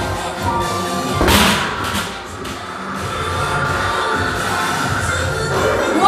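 Arcade boxing machine's punching bag struck once by a punch: a single loud thump just over a second in, over steady background music.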